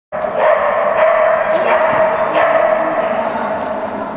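A dog barking a few times, with a steady hum underneath.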